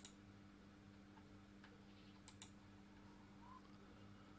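Near silence over a low steady hum, with a few faint computer mouse clicks: one at the start and two in quick succession about two and a half seconds in.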